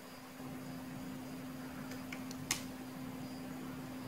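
A steady low hum over faint room hiss, with one sharp click about two and a half seconds in.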